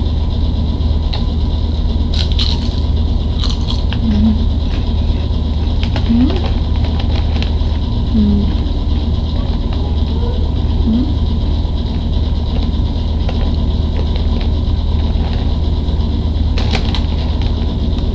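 Potato chips crunched while being eaten: a few sharp crunches, over a loud steady low hum.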